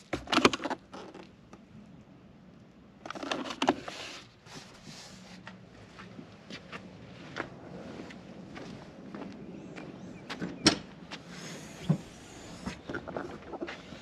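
Handling noises from a car's interior trim: clicks and knocks as a gloved hand works the plastic center-console lid, then scattered rustling, footsteps and a few sharp clicks later on.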